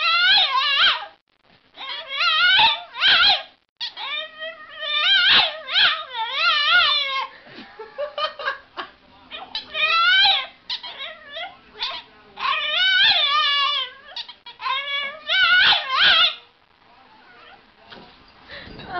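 A Boston terrier puppy crying in a run of high, wavering calls. They come in bouts of one to three seconds with short breaks, and stop about a second and a half before the end.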